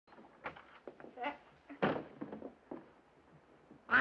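Faint, indistinct voices in short broken bursts.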